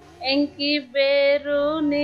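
A woman's voice singing a slow melody in four short held notes, with no clear accompaniment.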